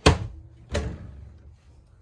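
A pair of wooden cabinet doors being pulled open by hand, giving two sharp clunks about three-quarters of a second apart.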